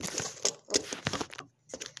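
Plastic zip-lock bag full of persimmons crinkling and rustling as hands squeeze and handle it, in irregular bursts with a short pause about one and a half seconds in.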